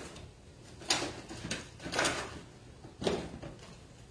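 Clothes being handled on a table: four short rustling, scraping sounds about a second apart.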